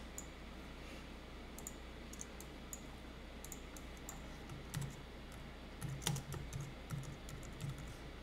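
Computer keyboard typing: a few scattered keystrokes at first, then a quicker run of keys from about halfway.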